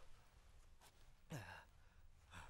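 A man's quiet, pained breathing, with a short groan that drops in pitch about halfway through.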